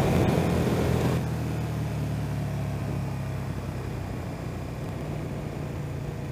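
Motorcycle engine running steadily at road speed, a low hum under the rush of wind on the microphone. The wind noise is louder for about the first second.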